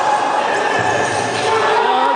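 Futsal ball being kicked and bouncing on a hardwood court during a shot on goal, with shouts, all echoing in a large sports hall.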